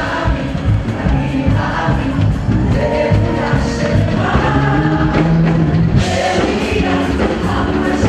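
Gospel-style worship music with a choir singing over a band.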